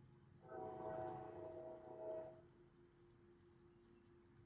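Faint train horn sounding one blast of about two seconds, a chord of several steady notes that swells twice and then stops.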